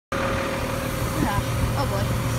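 Garbage truck engine idling, heard inside the cab: a steady low hum with a faint steady whine above it.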